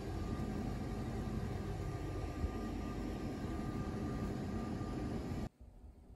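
Steady rumbling background noise with a faint high hum, cutting off abruptly about five and a half seconds in.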